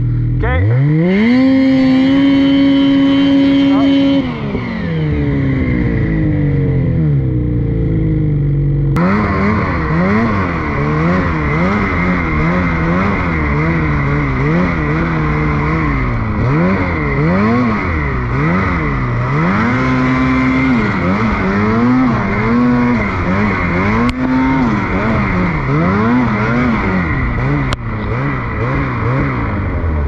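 Ski-Doo 850 two-stroke snowmobile engine revving: it climbs fast and holds high for a few seconds as the sled is worked free of deep wet snow, then drops. From about nine seconds in the throttle is worked up and down about once a second, with a rushing hiss underneath.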